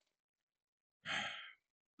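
A man's short sigh, a breathy exhalation of about half a second, coming about a second in.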